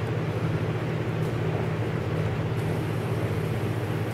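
A steady low mechanical hum with a faint even rushing noise over it, unchanging throughout.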